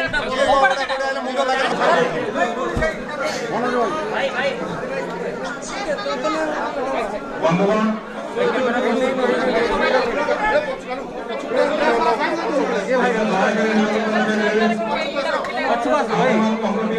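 Several men talking over one another in a crowded room, one voice carried by a handheld microphone.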